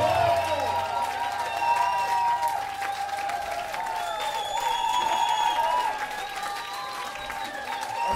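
Audience applauding and cheering as a live rock band's song ends, with the band's last low held notes dying away within the first few seconds.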